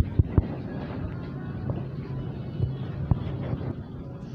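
A steady low machine hum under a faint noisy haze, with a few sharp clicks near the start and another about three seconds in.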